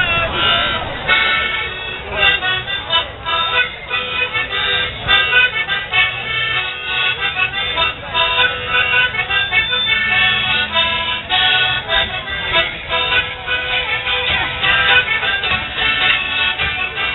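Live folk dance music: a brisk tune of quick notes, with crowd voices underneath.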